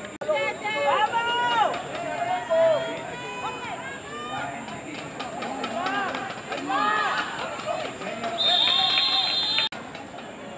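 Players and spectators shouting and calling out during a flag football play. Near the end, a referee's whistle sounds one steady blast of a little over a second, which cuts off abruptly.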